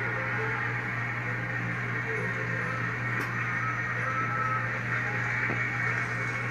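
Game-show theme music playing through a television's speaker and re-recorded in a small room, with a steady low hum under it.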